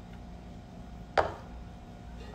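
A drinking cup set down on a surface after a sip: one short knock about a second in, over a low steady room hum.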